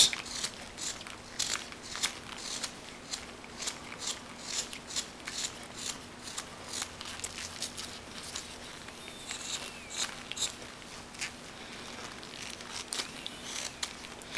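Carving knife slicing small chips off a piece of wood held in a gloved hand: a run of short, crisp cuts, irregular and about two a second.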